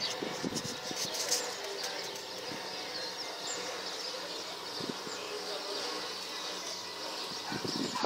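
Outdoor ambience: a steady high hiss with a few faint bird chirps and some soft low bumps from handling the camera.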